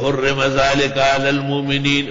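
A man reciting Quranic verses in Arabic in the chanted recitation style, his voice holding long, steady notes.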